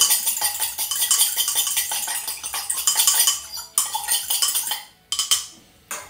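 A metal fork stirring quickly in a glass tumbler of water, clinking rapidly against the glass as a powder is dissolved. The stirring stops about two-thirds of the way through, followed by a couple of separate knocks.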